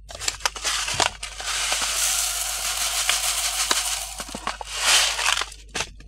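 Foil seed packet crinkling and rustling as it is handled. There is a steady run of rustle with small clicks from about a second in until past four seconds, then a louder crinkle near five seconds.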